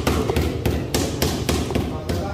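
Rapid, evenly spaced hammer blows on a building site, about three or four strikes a second.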